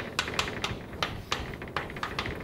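Chalk tapping on a blackboard as a figure is drawn: short, sharp, irregular taps, several a second.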